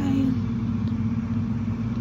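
Freezer running with a steady low hum at an even pitch. A voice trails off right at the start.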